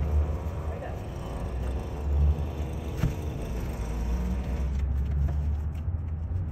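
Low, steady rumble of a motor vehicle engine, with a single sharp click about three seconds in.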